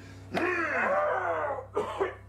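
A person's wordless voice, groaning or straining, rising and falling in pitch from about a third of a second in until shortly before the end, over a steady low hum.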